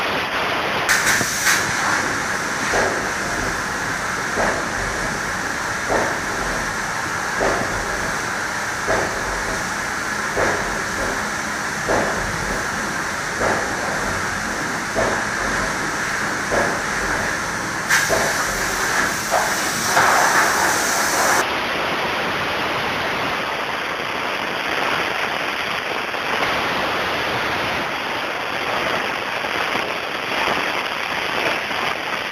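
High-pressure spray gun spraying bed liner: a loud, steady hiss, with a short knock about every second and a half through most of the first two-thirds.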